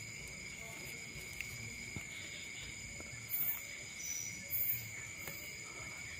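Crickets trilling steadily at several high pitches. A few brief soft rustles of plastic about three to five seconds in, as the plastic tie around a durian graft is handled.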